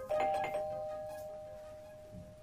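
Doorbell chime ringing once just after the start: two steady tones, the higher one stopping after about half a second and the lower one fading out slowly.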